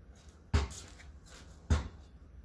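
A basketball dribbled on concrete: two bounces a little over a second apart, each a sharp thud with a short ring.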